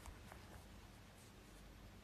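Near silence: room tone with a faint steady hum, and a few faint small clicks in the first half second.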